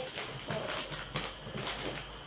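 Light, irregular knocks and rustling from items being handled, with a sharper knock about a second in.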